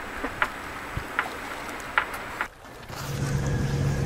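Sailboat moving through the water: a lapping, splashing wash with wind on the microphone and a few small clicks. About two and a half seconds in it dips briefly, and a steady low hum sets in.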